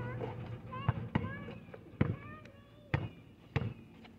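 A basketball being dribbled on an asphalt court: about five bounces at uneven spacing.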